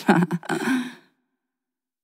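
A breathy human vocal exhalation, like a sigh, lasting about a second at the very end of a recorded song; then the recording goes silent.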